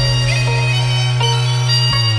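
Electronic music played on synthesizers: a steady low drone under long held notes that change pitch a few times, with no beat.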